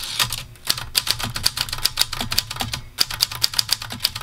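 Typing on a Maritsa 11 ultra-portable manual typewriter: a quick run of sharp keystroke clicks, several a second, with a couple of brief pauses.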